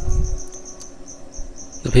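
A faint high-pitched chirp pulsing several times a second, cricket-like, with a brief low rumble in the first half second.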